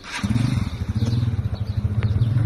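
A small engine comes in a moment after the start and runs steadily with a low, even, rapid pulse.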